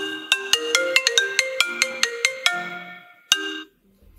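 Phone ringtone: a quick melodic run of short, ringing notes, about four to five a second, stopping about two and a half seconds in, then one more note. It signals an incoming call.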